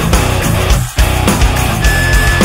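Heavy metal band playing an instrumental passage with distorted electric guitar, bass and drums, no vocals. The whole band stops for a split second just before a second in, then crashes back in.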